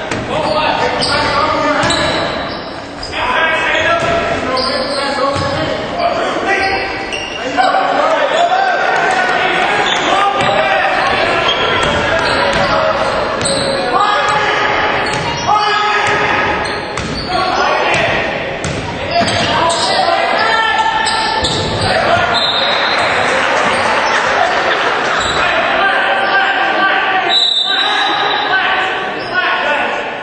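Basketball game sounds in an echoing gym: a ball bouncing on the court amid many overlapping voices of players and spectators.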